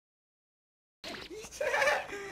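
Complete silence for about the first second, then a man bursting into loud laughter.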